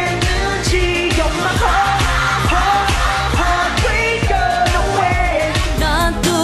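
A K-pop song: a sung vocal line over a steady beat and bass.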